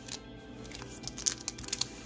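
Foil Pokémon booster pack wrappers crinkling and cardboard box parts scraping as the packs are handled, with a cluster of sharp crackles in the second half, over quiet background music.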